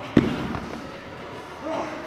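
Heavy 40 kg dumbbells dropped onto a rubber gym floor at the end of a set: one loud thud just after the start, with a few smaller knocks as they settle. A short vocal sound follows near the end.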